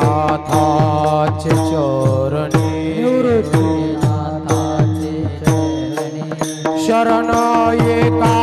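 Warkari kirtan music: pairs of brass hand cymbals (taal) struck in a steady beat of about two strokes a second, with a drum, a sustained drone and voices chanting a devotional refrain. Near the end the beat quickens to about four strokes a second.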